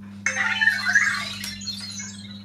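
Anki Vector robot's electronic chirps and warbling beeps as it turns left on its treads. They start suddenly about a quarter-second in and last about a second and a half.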